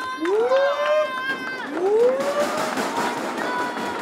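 A small crowd of spectators cheering and clapping, with voices calling out over it and two long rising shouts, the first about a quarter second in and the second about two seconds in.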